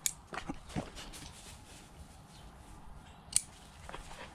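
Shine Muscat grapevine shoots and flower clusters being pruned off: short sharp snaps, one at the start, three more within the first second, and a crisp one a little past three seconds in.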